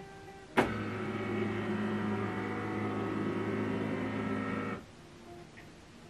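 HP LaserJet Pro M148dw flatbed scanner making a preview scan: the scan carriage motor starts with a click about half a second in, runs with a steady whine for about four seconds, then stops.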